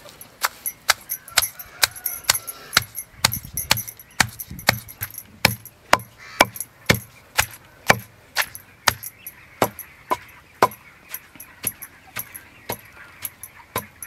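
Wooden pestle pounding nalleru (Cissus quadrangularis) stems and dried chili flakes in a stone mortar: a steady rhythm of about two sharp knocks a second as wood strikes the stems against the stone.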